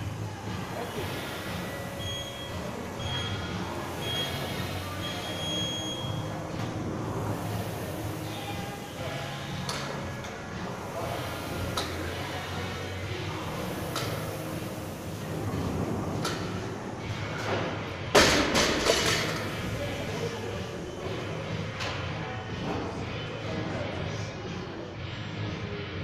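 Gym interval timer beeping a countdown, three short beeps and a longer one, about two to six seconds in, starting the workout. Then barbell deadlifts with bumper plates, with one loud clank of the loaded bar landing on the floor about 18 seconds in, over gym chatter and music.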